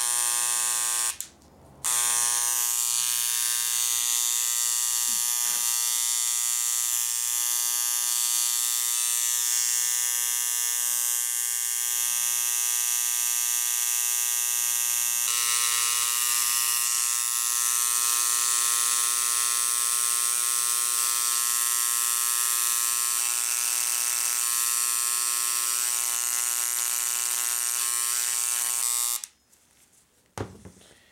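Dremel electric engraver buzzing steadily as its tip vibrates. It stops for a moment about a second in, then runs on with its tone shifting about halfway through, and stops just before the end.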